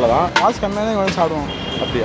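A man talking close to the microphone, with a brief steady high-pitched beep about three-quarters of the way through.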